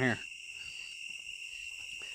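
Crickets chirping in a steady, continuous high-pitched trill.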